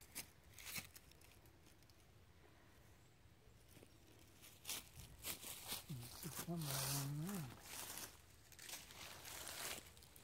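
Footsteps crunching and rustling through dry fallen leaves, starting about halfway through. A short wordless hum is heard about seven seconds in.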